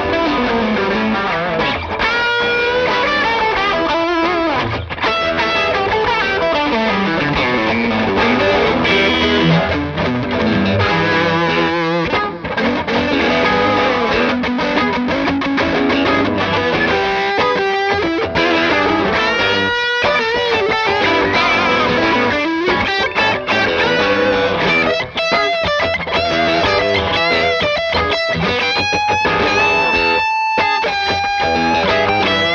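G&L Custom Shop ASAT T-style electric guitars played through amps in a jam. Lead lines run over the guitar backing, with notes sliding and bending in pitch.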